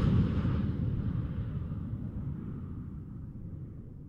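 Low rumble of a rocket-launch sound effect, fading away steadily.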